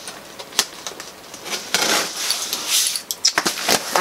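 Cardboard shipping box being opened by hand: rustling and scraping of cardboard and packing, with a sharp click about half a second in and a few quick knocks near the end.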